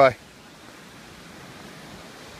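A steady, faint hiss of background noise with no distinct events.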